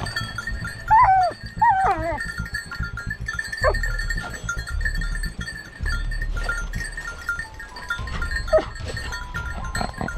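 Hunting dogs working a scent in the brush, giving a few high, falling yelps: two close together about a second in, then single cries near the middle and near the end.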